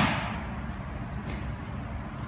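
A boxing glove cross landing on a focus mitt right at the start, its smack ringing away over about half a second, followed by a few faint light taps.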